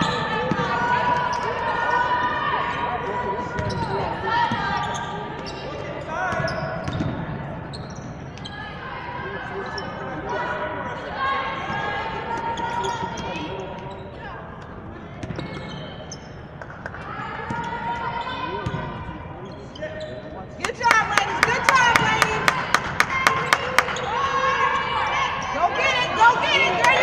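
Basketball game in a large gym: players and bench calling out over the ball bouncing on the hardwood court. Near the end the voices grow louder over a quick run of sharp, evenly spaced knocks, about three a second.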